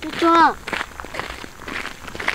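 A woman's voice says a short word, then footsteps scuff along a dirt and gravel road in an uneven run of steps.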